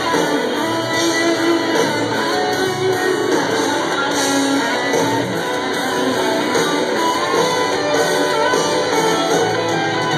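Live rock band playing loud, with electric guitar to the fore and no vocals, heard through a phone's microphone from within the audience.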